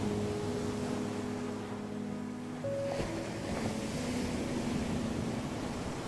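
Slow, soft instrumental music with long held notes, mixed with the wash of ocean surf that swells louder after about three seconds.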